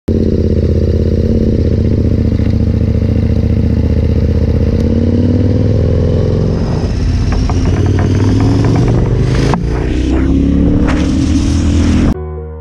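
KTM 1190 Adventure's V-twin engine running steadily, then pulling away about halfway through and accelerating, with rising pitch, a short dip near the end as it changes gear, and clicks and rattles from the rolling bike.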